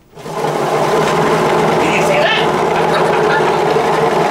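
Stirricane bucket-lid mixer's small electric motor switched on and running at a steady speed, a steady hum that starts about a quarter second in.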